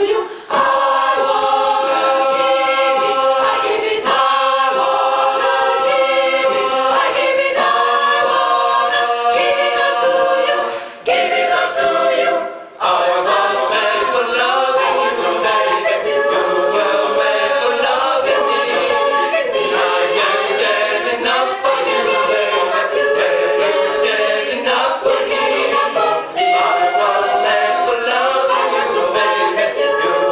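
An a cappella choir singing a pop-rock song in several-part harmony, with held chords and no instruments. The singing breaks off briefly twice, about eleven and twelve and a half seconds in.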